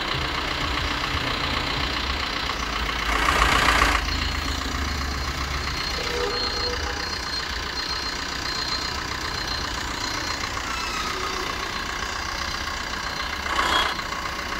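Maruti Suzuki Vitara Brezza's engine idling steadily, with a brief louder burst of noise about three seconds in and again near the end.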